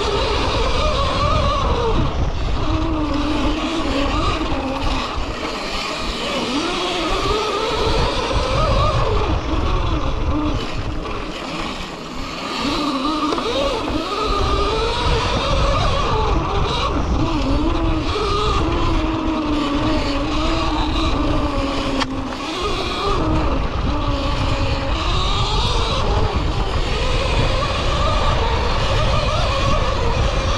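Electric motocross bike (Cake Kalk OR) ridden hard on a dirt trail. The electric motor's whine climbs and falls in pitch as the throttle is worked, over a steady rush of wind and tyre noise, with knocks and rattles from the bumps.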